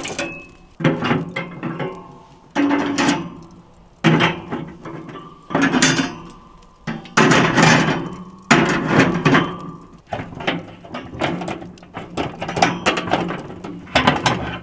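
Metal grill grates and tongs clanking against the steel frame of a charcoal grill as the grates are set in place over the coals: a series of sharp metallic clanks about every second and a half, each ringing briefly.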